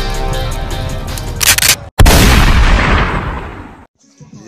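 Intro music with a steady beat, then a short noisy swell, a split-second cut-out and a loud cinematic boom hit about two seconds in that fades out over the next two seconds.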